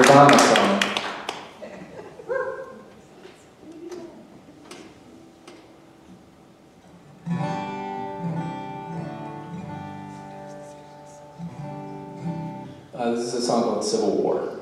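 Acoustic guitar: a few scattered soft clicks and a brief note, then chords ringing out steadily from about seven seconds in, with a louder burst near the end.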